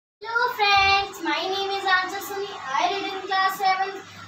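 A young girl's voice singing a short melodic phrase: several held, sustained notes separated by brief breaks.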